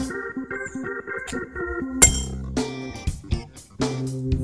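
A palm slapping down hard, once, on the mouth of a water-filled glass bottle about two seconds in: a sharp crack as the water cavitates inside, leaving the bottle unbroken. Guitar background music plays throughout.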